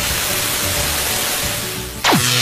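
Television static sound effect: a steady hiss of white noise, with faint music beneath it, easing slightly near the end.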